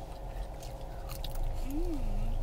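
A person chewing a mouthful of fried sweet potato: soft mouth sounds and faint crunches, ending in a short hummed "mm".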